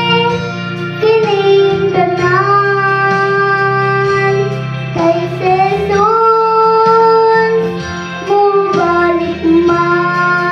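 A young girl singing into a microphone over instrumental accompaniment, holding long notes in phrases with short breaks between them.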